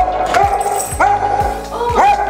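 Spaniel barking excitedly, about three long, loud barks roughly a second apart.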